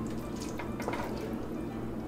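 Spoon stirring thick macaroni and cheese in a saucepan: soft wet squelching with a few light clicks of the spoon against the pot.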